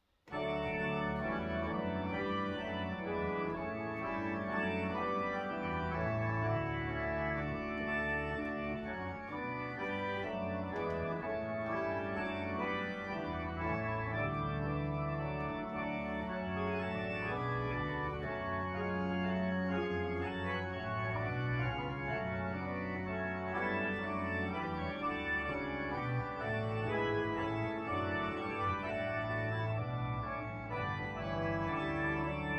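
Two-manual organ playing a hymn tune in sustained full chords over a moving bass line. It starts abruptly just after the start and plays on without a break.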